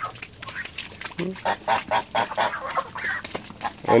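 Domestic geese honking in short, irregular, repeated calls.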